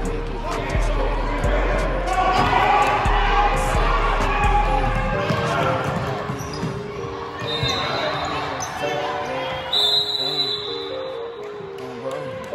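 Basketball bouncing on a hardwood gym floor during a game: several sharp thuds in the first five seconds. A short high squeak comes about ten seconds in.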